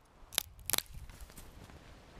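Ratcheting hand pruners cutting a pine branch: two sharp snips about a third of a second apart, the second a quick cluster of clicks.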